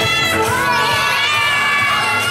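A crowd of children shouting and cheering, with music still going underneath.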